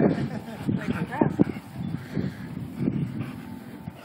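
Two dogs growling in play while wrestling over a balloon, in short irregular bursts, with a brief higher whine about a second in.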